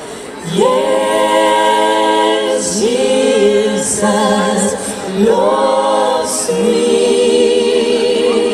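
A woman singing a slow melody into a microphone in long held notes with vibrato, in four phrases with short breaks between them.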